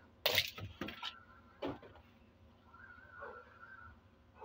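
A sharp plastic crackle about a quarter second in, then a few fainter clicks: a plastic bottle being handled while apple cider vinegar is added to the washer.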